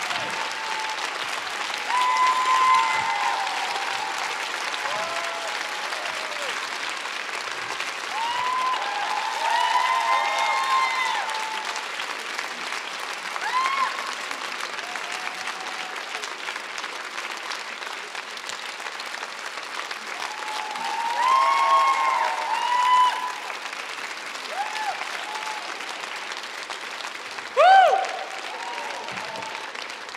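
Concert audience applauding steadily after a song, with scattered voices calling out above the clapping. One loud rising shout comes near the end.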